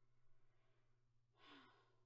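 Near silence with a faint steady room hum, broken about one and a half seconds in by a single short breathy sigh.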